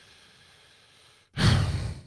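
A man sighs heavily into a close microphone about one and a half seconds in: a loud, breathy exhale lasting about half a second, after a quiet stretch of room tone.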